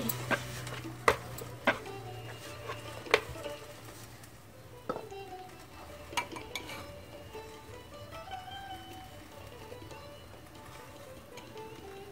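Quiet background music with sustained notes. Over it, a few sharp knocks in the first few seconds: a wooden rolling pin striking a wooden board as paratha dough is rolled flat.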